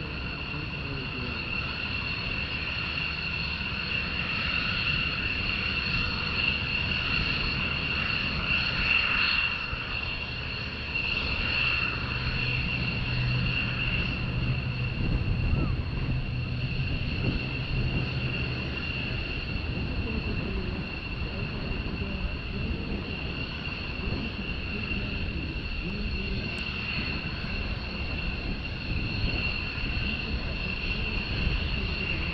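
C-17 Globemaster III jet transport flying overhead: its four Pratt & Whitney F117 turbofans give a steady high whine over a continuous low rumble, a little louder through the middle as it passes.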